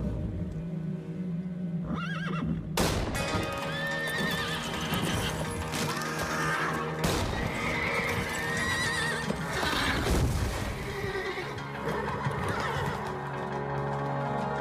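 Horses whinnying several times, with hooves clattering and a few sharp knocks, over film music with long held tones.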